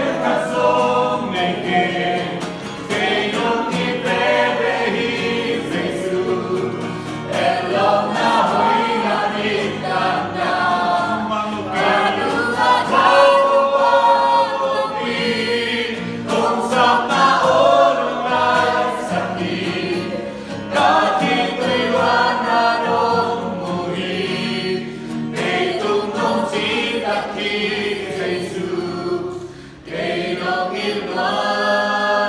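A group of young people singing a worship song together, many voices at once, with emotion. The singing stays loud throughout and dips briefly near the end.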